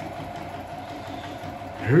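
Singer electric sewing machine running steadily, stitching through heavy curtain fabric with a rapid, even clatter.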